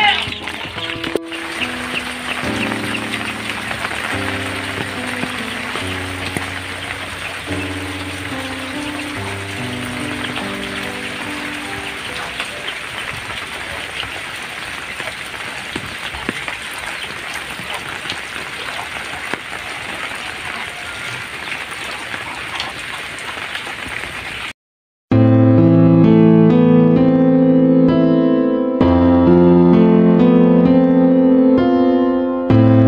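Rain falling steadily, with soft music notes underneath in the first half. About 25 seconds in it cuts to a moment of silence, and louder piano music takes over.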